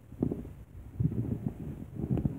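Low, muffled bumps and rumbles of hands working on the counter right next to the phone's microphone, in a few uneven bursts.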